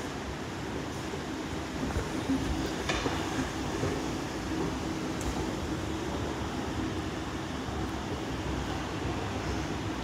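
Inclined moving walkway (travelator) running with a steady mechanical hum and rumble, and a brief clatter about three seconds in.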